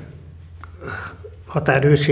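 A man speaking: a short pause in his talk, then he resumes about one and a half seconds in, with a faint steady low hum underneath.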